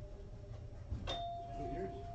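A shop door's entry chime: a click about a second in, then one steady chime tone that rings on for about two seconds.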